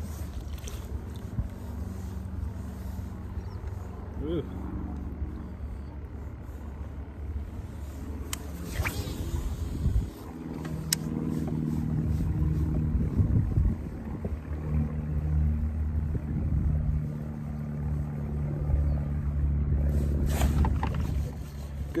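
Boat motor running with a steady low hum that grows louder about halfway through, over low wind rumble.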